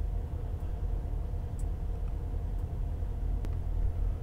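Steady low background hum, with two faint clicks, one about a third of the way in and one near the end.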